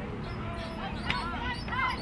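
People shouting from the sideline and stands in short rising-and-falling calls, starting about half a second in, over a low outdoor rumble. A sharp knock is heard about a second in.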